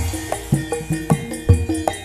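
Javanese gamelan ensemble playing: kendang hand drums struck in a steady rhythm over held, ringing notes from bronze gamelan instruments.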